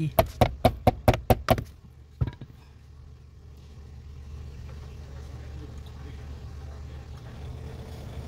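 A hammer tapping rapidly on a Nissan Tiida's seized air-con blower motor, about eight blows in a second and a half and one more a moment later. The freed blower motor then starts to spin, a rush of air that slowly grows louder over a low steady hum.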